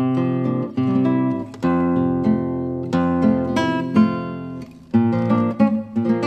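Background music: acoustic guitar strumming chords, each new chord struck sharply and then left to ring.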